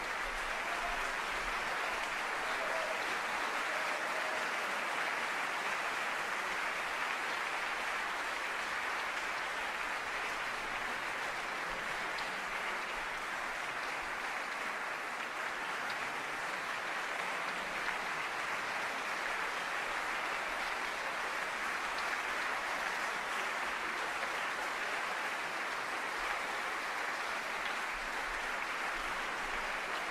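Concert hall audience applauding steadily and without letup, a sustained ovation calling the performers back on stage for a curtain call.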